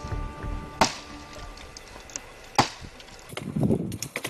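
Chopping blows on willow branches: two sharp strikes nearly two seconds apart, then a quicker run of knocks near the end. Soft background music fades in the first second.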